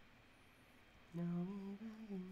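A man humming a few wordless notes, starting about a second in.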